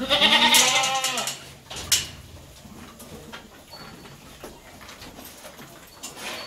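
A goat gives one loud, quavering bleat lasting about a second, its pitch rising then falling. A single sharp knock follows about two seconds in.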